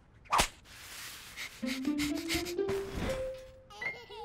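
Cartoon sound effects: a sharp whip-like snap about half a second in, as the stretched hair elastic springs free. It is followed by a swishing sound under a short music cue whose notes step upward in pitch.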